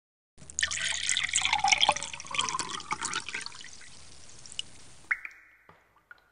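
Water pouring and trickling with splashes and drips, fading out about five seconds in.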